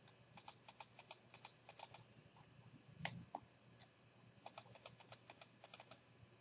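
Computer mouse clicking and scroll-wheel ticking at a desk: two quick runs of light clicks, about seven a second and each well over a second long, with a few single clicks between, as the map is zoomed and a sample polygon is drawn.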